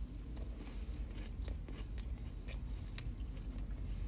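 A person quietly chewing a bite of soft cookie, with a few faint mouth clicks, over the low steady rumble of a car's cabin.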